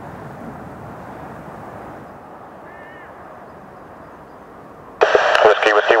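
Steady rumble of jet engines at the airfield heard from a distance, easing slightly after about two seconds. An air traffic control radio voice cuts in near the end.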